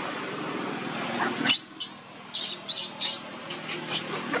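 Baby monkey crying: a rising wail and then a quick run of about five shrill squeals, starting a little over a second in. It is a distress cry from an infant held away from nursing by its mother.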